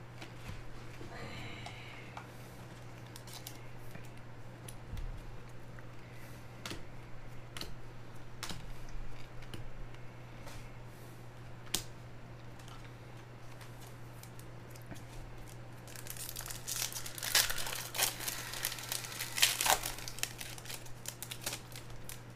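Trading cards being handled, with scattered light clicks as cards are flicked through. About 16 seconds in come several seconds of loud crinkling and tearing, a foil card pack's wrapper being torn open.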